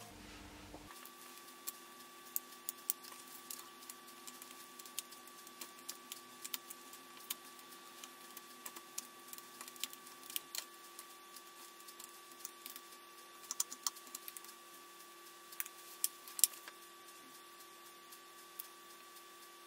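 Scattered light clicks and taps, irregular and brief, of hands handling cardstock and small cut white pieces on a craft mat, with a few sharper clicks near the end.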